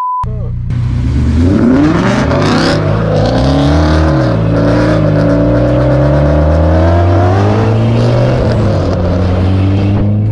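Turbocharged K24 four-cylinder engine of a Honda Civic Si accelerating hard through the gears, heard from inside the cabin. The revs climb, fall back at a shift about three and a half seconds in, climb and hold, drop again near the eight-second mark and start climbing once more.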